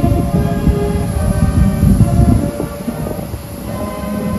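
Band music with long held notes at an outdoor military welcome, over a heavy low rumble.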